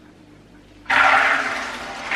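Soaked black-eyed beans and their soaking water poured from a steel bowl into a colander in the sink: a sudden rush of pouring water starts about a second in, then slowly eases.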